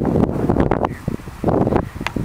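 Wind buffeting the microphone, a rough rumble that comes in two gusts, the second about one and a half seconds in.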